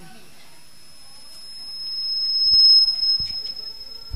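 A high-pitched whistle of microphone feedback through the sound system, one steady pitch that swells to loud about two and a half seconds in and then fades, with a couple of low knocks from microphone handling.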